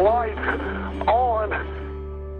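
A caller speaking on a recorded emergency phone call, telephone-quality, with short bursts of words near the start and about a second in, over a steady low hum and soft background music.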